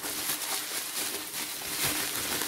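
Plastic bubble wrap crinkling and crackling steadily as it is handled and peeled open by hand.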